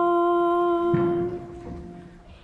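One long sung note in the liturgy, held steady and then fading away about a second and a half in. About a second in there is a low rustle of the congregation shifting and starting to stand.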